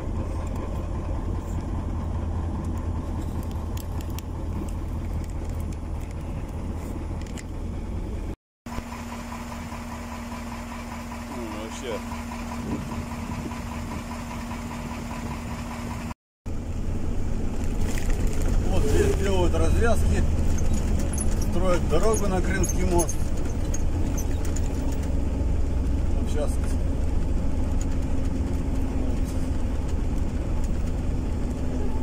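Steady low engine and road rumble of a car being driven, heard from inside the cabin, with two abrupt cuts where the recording is edited.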